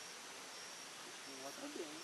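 Faint, steady outdoor background hiss with a thin, high insect trill coming and going, and a distant voice murmuring briefly in the second half.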